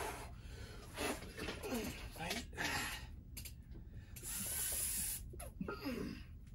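A man's hard, forceful breaths blown out in hissy bursts about a second apart, with short strained grunts between them, from the exertion of pressing a barbell rep after rep; one long exhale comes near the end.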